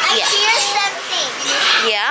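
Young children's voices mixed with the chattering and squawking of pet parrots in a room full of loose birds.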